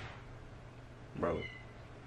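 Quiet room tone broken by one short vocal sound about a second in.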